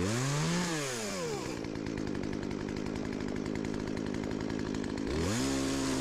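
Two-stroke gas chainsaw revved up and back down to idle, running steadily at idle for a few seconds, then revved again near the end.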